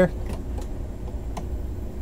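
A cabinet drawer sliding open, with a few light clicks and a single sharp knock about a second and a half in, over a steady low rumble.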